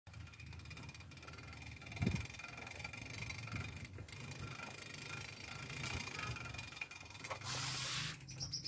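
Faint sound of a mountain bike rolling over a brick path, with the light ticking of its freewheel ratchet as it coasts and a soft bump about two seconds in.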